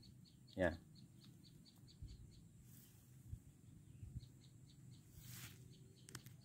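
Quiet outdoor ambience with faint, rapid, high-pitched chirping, about six chirps a second, that fades in and out.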